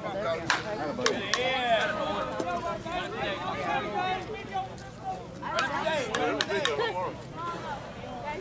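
Voices of softball players and spectators calling out across the field, with a handful of sharp knocks scattered through, a few in the first couple of seconds and another cluster near the end.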